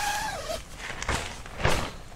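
Zipper on the nylon rain-fly door of an ALPS Mountaineering Lynx tent being pulled open: one drawn-out stroke with a whine that rises and then falls in pitch, followed by two short rasps about a second in and near the end.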